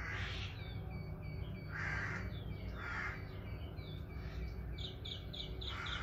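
Birds calling: a few hoarse, caw-like calls and many short, high chirps over a steady low hum.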